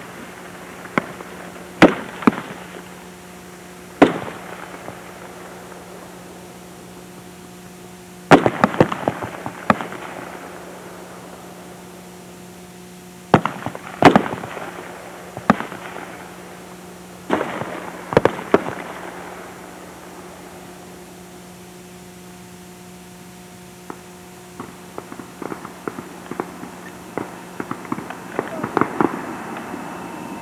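Single M16 rifle shots on a firing range, fired at irregular intervals by several shooters, each crack followed by a short echo. The shots come in clusters with a lull of a few seconds past the middle, then fainter, quicker pops near the end, over a steady low hum.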